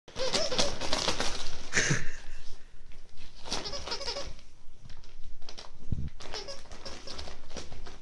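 Christmas wrapping paper crinkling and tearing in bursts as dogs tug and nose at a wrapped present, with a short wavering cry near the start.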